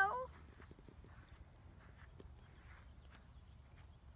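Quiet outdoor ambience: a low steady rumble with a few faint, scattered light taps.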